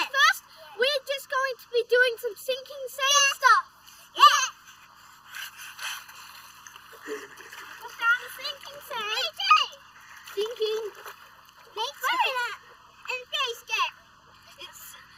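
Young children's high-pitched voices and squeals, with the splashing of feet wading through shallow water, the splashing plainest around the middle between the calls.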